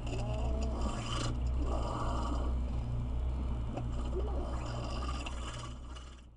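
Steady low rumble of a car's engine and running gear, picked up by a dashcam inside the cabin, with faint short squeaks and scraping sounds over it.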